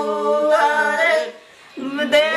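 A group of women singing a traditional wedding song (geet) together without accompaniment, in long held, gliding notes. The singing breaks off briefly about two-thirds of the way through, then resumes.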